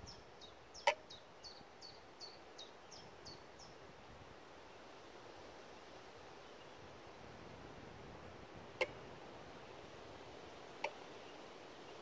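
A small songbird singing a run of short, high, falling notes, about two or three a second, that stops about three and a half seconds in, over a faint outdoor background. A few sharp clicks sound about a second in and twice near the end.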